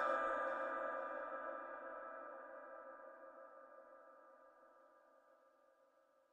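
The echoing tail of a Quran reciter's held note, dying away steadily over about four seconds into near silence.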